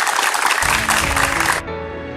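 A group of people clapping together, cut off abruptly about one and a half seconds in. Background music with steady sustained notes comes in under the clapping and carries on alone after it stops.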